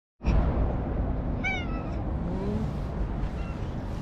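Stray cat meowing: one short, high, slightly falling meow about a second and a half in, then softer cries, over a steady low rumble.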